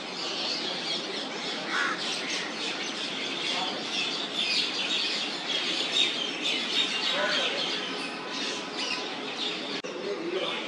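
Many birds chirping and calling at once, a dense, busy chorus of short high calls with occasional harsher squawks.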